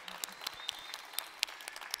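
Audience applause thinning out to scattered individual claps.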